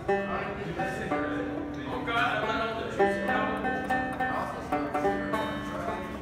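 Banjo being picked: a run of bright plucked notes, with some notes left ringing for about a second.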